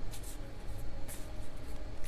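Tarot cards being shuffled by hand: a few brief papery swishes of cards sliding over one another, over a steady low hum.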